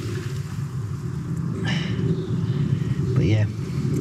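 Drain jetter engine and pump running steadily, a low drone, while a jetting hose works through the sewer pipe from the manhole.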